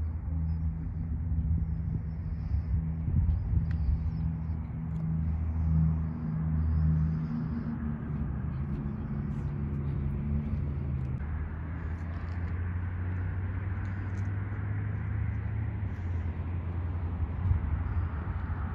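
Low, steady mechanical rumble with a hum that shifts in pitch a few times.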